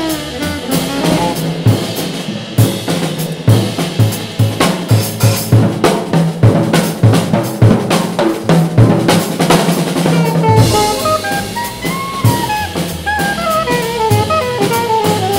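Live jazz drum kit playing a solo break, a dense run of drum and cymbal strokes, after an alto saxophone phrase ends about half a second in. The alto saxophone comes back in with a new phrase about ten seconds in, over the drums.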